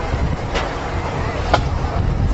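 Marching band percussion playing sparse single strikes, about one sharp hit a second, over a steady low rumble.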